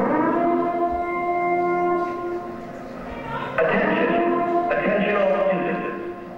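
Recorded dance soundtrack played over a hall's speakers, opening with a sudden, long, steady horn-like tone that holds for about three seconds, followed by louder, rougher horn-like blasts.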